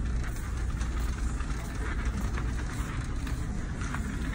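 Low steady rumble with faint scattered clicks and rustles: handling and movement noise from a phone carried while walking.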